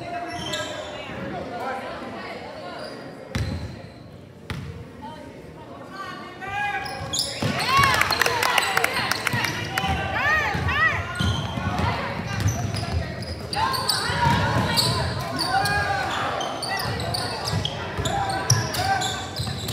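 Basketball game on a hardwood gym floor: the ball bouncing, with voices calling out in the large hall. About halfway through it gets louder as play runs up the court, with sneakers squeaking sharply on the floor.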